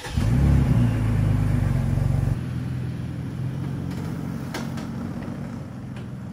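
Lifted Toyota Tacoma pickup pulling away under throttle. The engine is loudest for about the first two seconds, then drops suddenly to a quieter, steady run as the truck drives off.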